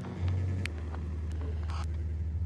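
Experimental electronic music: a steady low synthesized bass drone that enters a moment in and holds, with a few sparse clicks above it.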